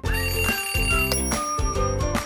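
TV show theme jingle: upbeat music with a high, bell-like ringing tone held over it, which jumps to a new pitch about a second in.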